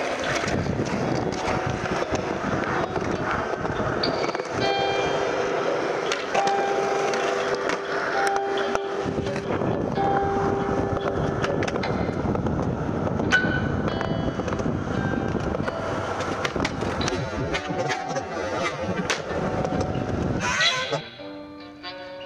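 Skateboard wheels rolling on concrete, a continuous rumble with sharp clacks of the board, over a music track with a steady pitched line. The rolling stops abruptly near the end and the music carries on more quietly.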